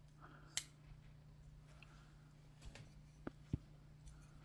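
Titanium-handled liner-lock folding knife closing: one sharp click about half a second in as the blade snaps shut, then a few fainter clicks and taps near the end as the closed knife is handled.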